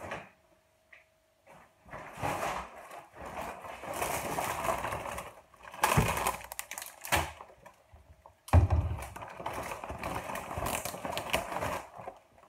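Reusable plastic shopping bag rustling and crinkling as it is handled and rummaged through for groceries, with a heavier thump about eight and a half seconds in as the bag is set down or shifted.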